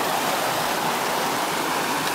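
Creek water rushing steadily over rocks and small rapids, a constant even rush.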